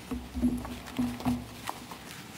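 Courtroom handling noise as counsel change over at the lectern: a few soft knocks and thumps, about half a second, one second and just past a second in, with a faint low hum among them.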